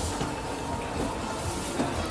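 Escalator running: a steady mechanical rumble with occasional light clicks, over the hum of a busy mall.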